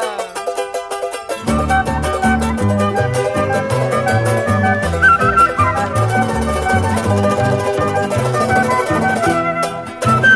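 Andean folk music: a strummed charango with a flute melody, joined about a second and a half in by a bass and a steady beat.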